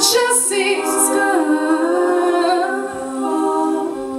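All-female a cappella group singing in close harmony through microphones, several voices holding sustained chords that shift pitch together.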